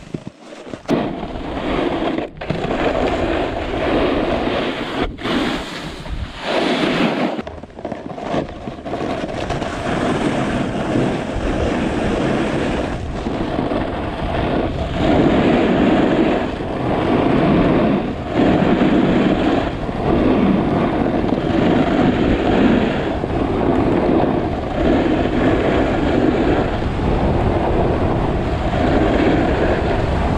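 Snowboard sliding and carving over slushy spring snow, a continuous scraping rush that swells with each turn every second or two, mixed with wind on the microphone. In the first eight seconds the sound cuts out briefly a few times.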